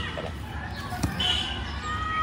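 A couple of short dull knocks, the clearer one about a second in, with faint voices in the background.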